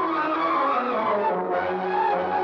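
Orchestral film-song music: several instruments holding and shifting overlapping chords in a dense passage.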